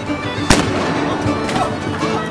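Music with a single sharp bang about half a second in, a black-powder ship's cannon firing a blank charge, and a fainter crack about a second later.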